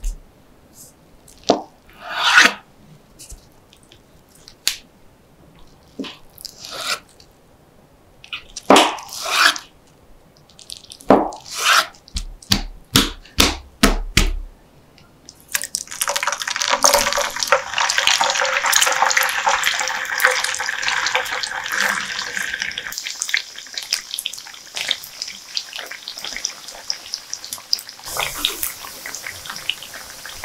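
A series of sharp knife strokes on a wooden cutting board, ending in a quick run of cuts, as a block of tofu is cut. About halfway through, tofu drops into hot oil in a nonstick frying pan and starts sizzling suddenly: loud and crackly for several seconds, then a softer steady sizzle as it fries toward golden brown.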